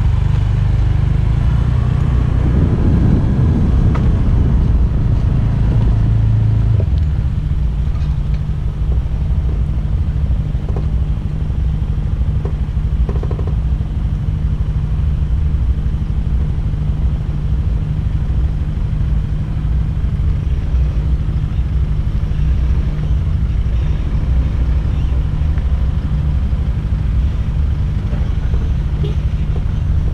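Motor scooter engine running with a steady low rumble, close to the scooter-mounted camera. It is busier and louder for the first several seconds while the scooter rides, then settles to an even idle from about seven seconds in.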